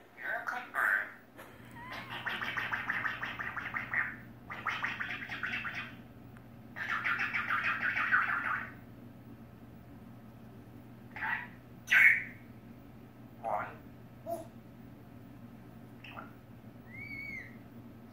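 African grey parrot vocalizing: three bursts of rapid, speech-like chatter in the first half, then a few short sharp calls and a brief rising-and-falling whistle near the end.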